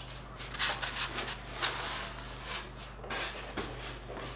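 Rigid foam insulation boards and wooden panels being slid and stacked by hand: irregular scrapes, rubs and light knocks.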